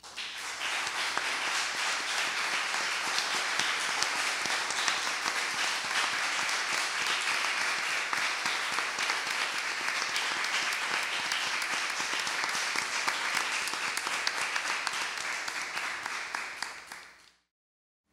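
Audience applauding steadily, then tapering off and cutting to silence near the end.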